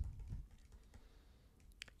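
Faint taps of a stylus writing on a pen tablet, ending in two sharp clicks close together near the end, over quiet room tone.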